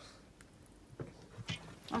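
A few faint drips of water, about half a second apart, falling from a leaking front-loading washing machine into a steel bowl of water held beneath it. The leak is one the owner puts down to a failed door seal.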